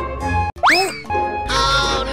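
Background music for a comedy clip. About half a second in, the music drops out for an instant and a cartoon 'boing' sound effect glides quickly upward in pitch. Near the end comes a long, wavering, voice-like sound.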